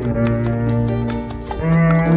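Double bass played with a bow: a long low note held for about a second and a half, then a step up to a higher note near the end, with light sharp ticks over it.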